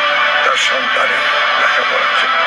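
A man speaking Bengali in an address to camera, with background music underneath.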